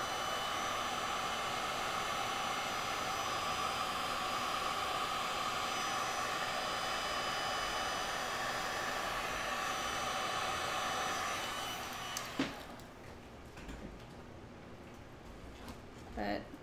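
Heat gun blowing steadily with a slight whine, pushing thick Stone Coat Platinum Coat epoxy to form waves and lacing; it takes a lot of heat to move. It stops about twelve seconds in, followed by a single knock.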